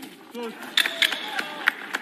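Boxing arena sound under a man's commentary voice, with a few sharp smacks about a second in and again near the end.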